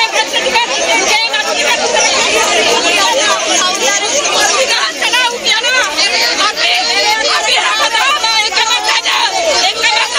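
A crowd of people talking and shouting over one another, with a woman shouting close by.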